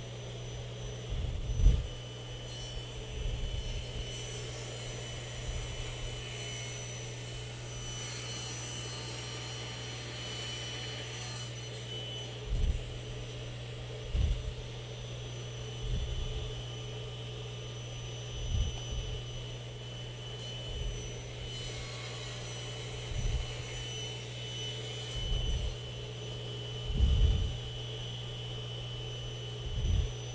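Table saw and shop dust collector running with a steady hum, while the corners of a square wooden blank are crosscut on a sled to make an octagon. The noise swells briefly during the cuts, and dull low thumps come every couple of seconds as the sled and workpiece are moved and rotated.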